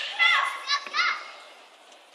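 High-pitched young voices calling out in short shouts in a large hall, three quick calls in the first second, then fading away.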